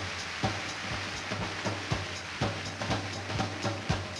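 Big-band drum kit playing a pounding tom-tom beat, a low strike about every half second, over a steady hiss of noise, with no horns playing.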